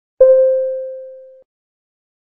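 Speaking-clock time-signal tone: a single pitched ding that starts sharply about a fifth of a second in, fades over about a second and then cuts off. It marks the exact moment of the announced time.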